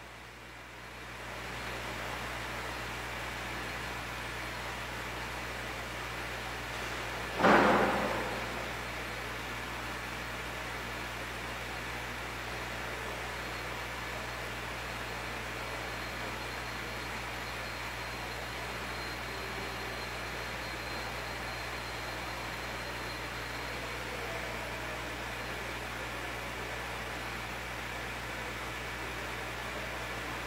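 Steady background hiss with a low electrical hum, and a single sudden louder noise about seven seconds in that dies away over about a second.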